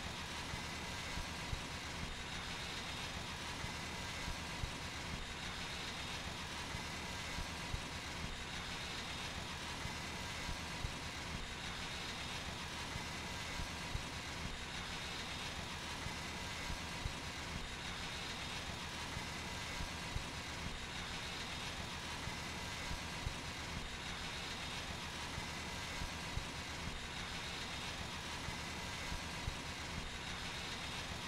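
Guzzler vacuum truck running steadily, an even mechanical drone with a faint swell about every three seconds and small scattered clicks.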